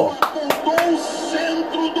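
Low speech running under the scene, with three sharp clicks in the first second.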